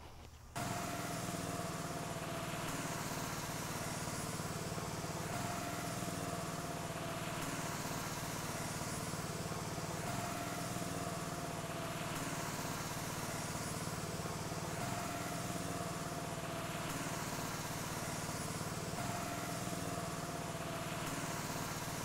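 Air supply for an HVLP cup gun running steadily: a constant motor hum with an even airy hiss as stain is fogged on at very low pressure, about one or two pounds, to lay down speckles. It starts abruptly about half a second in.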